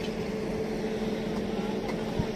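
Engine running steadily with a constant, even drone that does not rise or fall.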